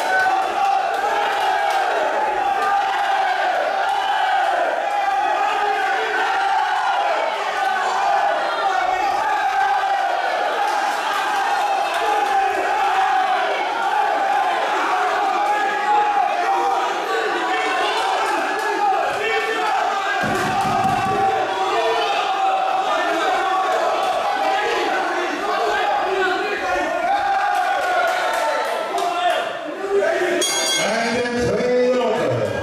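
Kickboxing crowd shouting and calling out continuously, many voices overlapping, with a few sharp knocks among them.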